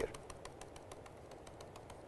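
Faint, rapid light clicks, about six or seven a second, of a stylus tip tapping on a tablet screen as a dotted line is drawn dot by dot.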